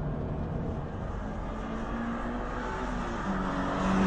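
Toyota GT86's two-litre boxer four-cylinder engine running on track with a steady note over road and wind noise, growing louder near the end as the car comes alongside.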